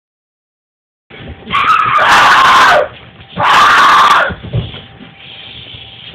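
A person screaming twice, loud and high-pitched. The first scream starts about a second and a half in and lasts over a second, its pitch dropping at the end. After a short break comes a second scream of about a second.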